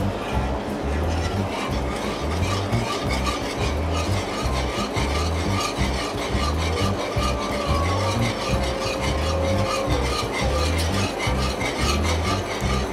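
Metal wire whisk scraping and stirring continuously around a cast iron skillet, working water into a thick flour roux for gravy, over background music.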